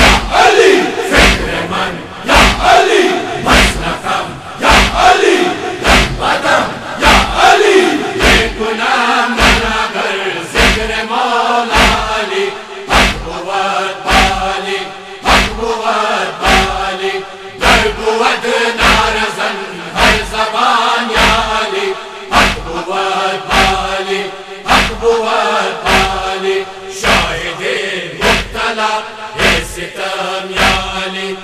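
A group of men chanting a Persian devotional poem in unison, with a steady beat of chest-beating (matam), about three strokes every two seconds.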